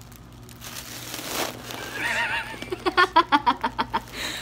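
A breathy rush about a second in, then a short high wavering squeal and a burst of rapid, high-pitched laughter from a teenage girl who has just breathed helium from a foil balloon.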